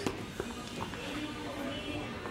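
Faint indoor hall ambience: quiet background music and distant voices, with a small knock about half a second in.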